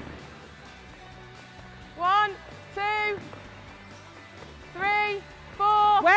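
Four short, loud shouted calls, about a second apart, starting about two seconds in: voices counting passes in a netball drill. Soft background music and hall noise lie underneath.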